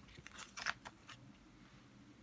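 A picture-book page being turned by hand: a few quick, faint rustles and crinkles of paper, loudest just under a second in.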